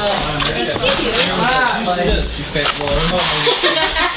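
Untranscribed voices talking throughout, over the scraping and rustling of a cardboard gift box being opened by hand and its packing being pulled at.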